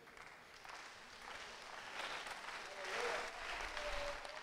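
Church congregation applauding. The clapping swells over the first few seconds and is loudest near the end.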